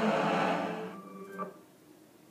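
Movie-clip soundtrack music with held notes, played back into the room, fading out about a second in as the clip ends. A short click follows, then quiet room tone.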